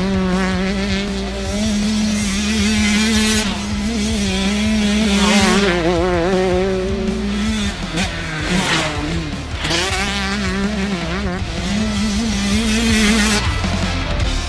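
KTM 125 SX two-stroke motocross engine revving high, its pitch wavering with the throttle and dropping out briefly every few seconds, with music underneath.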